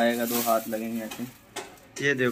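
Clear plastic shoe wrapping crinkling as a sneaker is handled, under a voice in the first second.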